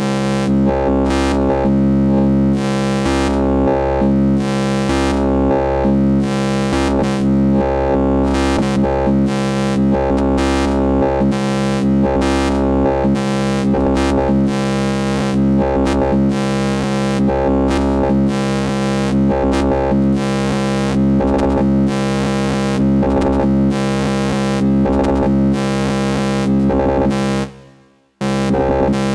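Modular synthesizer drone from a DIY Exquisite Corpse module: a dense, steady chord of many held tones with a fast, irregular flickering stutter running through it, in the manner of a Grendel Drone Commander. It cuts out shortly before the end.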